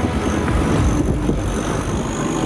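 Boat engine running steadily at speed, a low droning rumble, with rushing water and wind.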